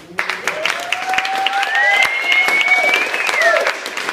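Audience applauding, breaking out suddenly, with one long whooping cheer over the clapping that rises, holds and then falls away.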